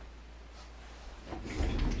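Quiet room tone, then from about a second and a half in a low rumbling of someone moving about and handling things close to the microphone.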